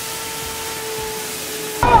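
Leaf blower running steadily, a rushing hiss of blown air, cutting off suddenly near the end.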